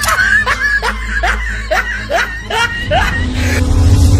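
A person laughing in a run of about eight short, rising hoots over the first three seconds. A steady low tone comes in near the end.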